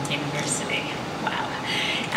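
A woman's voice over a microphone, brief and soft, with fragments of words between short gaps, over a steady hiss of room noise.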